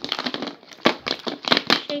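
Plastic packaging crinkling and clicking as it is handled close to the microphone: a run of irregular sharp crackles.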